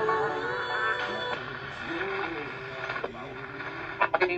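Music playing through the small speaker of a Sony pocket AM/FM radio while its station is being tuned. The sound changes about a second and a half in.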